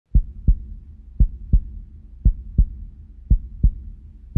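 Heartbeat sound effect: four deep double thumps, lub-dub, about one beat a second, over a low steady rumble.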